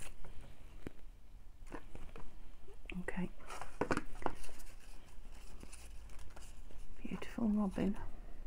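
Paper cut-outs rustling and clicking as hands sort through a pile of them in a metal tin. A short murmured voice comes in near the end.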